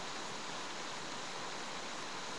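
Steady, even hiss of background noise picked up by a webcam microphone, with no distinct sound events.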